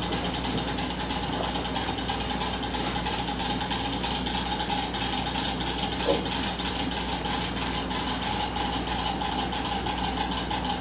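Rapid, uneven clicking over a steady hum.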